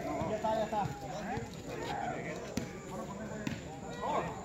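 Faint chatter of several people talking at a distance, with a few soft thuds scattered through.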